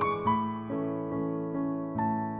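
Slow, gentle piano music for a ballet adagio, with a new note or chord struck about every half second over held low notes.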